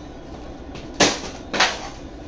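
Two sharp impacts, the first about a second in and the second just over half a second later, each ringing out briefly.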